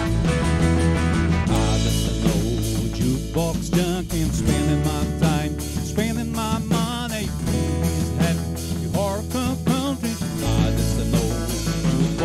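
Live country band playing an up-tempo song on electric and acoustic guitars, electric bass and drum kit. A lead line of wavering, bent notes runs over a steady beat.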